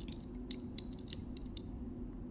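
A few small, faint clicks and creaks of a metal instrument and a stainless steel orthodontic band against a dental stone cast as the band-and-loop space maintainer is pressed into place on the tooth.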